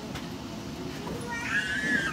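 A high-pitched whoop from a person's voice, rising and then falling, about one and a half seconds in, over the steady rumble of a light-rail train's interior.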